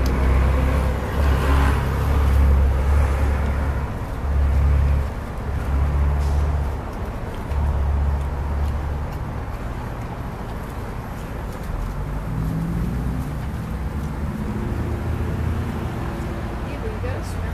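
Road traffic passing close by, with a low rumble that comes and goes in surges during the first half and settles to a steadier hum later.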